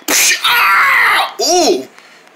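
A person laughing loudly, starting with a long breathy burst and ending in a short voiced note.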